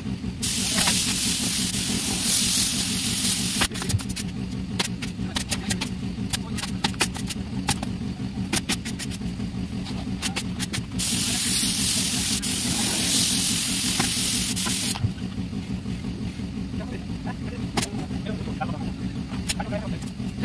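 Steady low hum of a running machine under two long bursts of hissing compressed-air spray: the first about three seconds long near the start, the second about four seconds long in the middle. Sharp clicks and taps are scattered between them.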